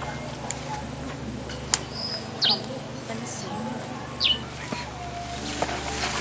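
Insects chirping in grassland: a steady, high, pulsing trill about twice a second. Three short falling whistle calls and one sharp tick, just under two seconds in, are heard over it.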